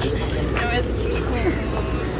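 Outdoor street ambience: scattered voices of people talking and calling out over a steady low rumble of traffic.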